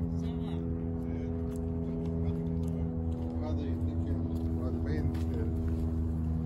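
A steady, low mechanical hum made of several even tones, running unchanged throughout. Faint voices of other people come in around the middle.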